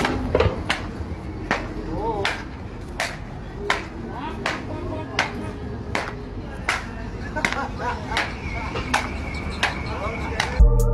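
Footsteps of a person walking on pavement in flip-flops, a sharp slap about every three-quarters of a second at an even walking pace.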